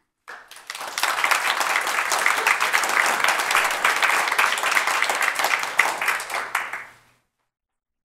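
An audience applauding. The clapping starts just after the start, holds steady, and dies away about seven seconds in.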